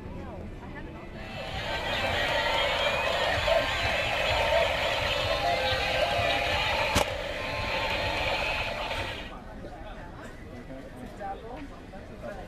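Battery-operated toy police cars making electronic noise together: tinny siren wails, beeps and jingles from small speakers. The sound starts about a second in, lasts about eight seconds and then fades, with one sharp click partway through.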